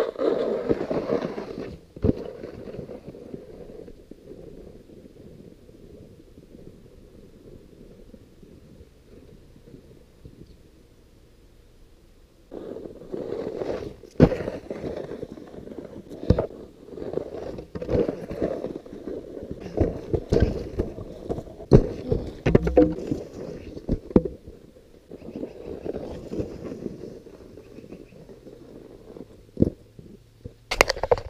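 A snowskate and boots on hard-packed, below-freezing snow heard from close to the surface: low scraping and rumbling, with a loud burst at the start. After a quieter stretch, a busy run of sharp knocks and crunches comes in the middle and then thins out.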